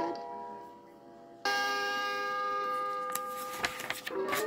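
The read-along record's page-turn chime: a bell-like tone that starts suddenly about a second and a half in and rings on evenly for about two seconds before stopping near the end, the signal to turn the storybook page. A few faint clicks come near the end.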